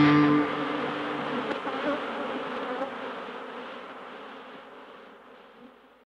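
A held band chord cuts off about half a second in, leaving the buzzing of an insect swarm that fades away gradually.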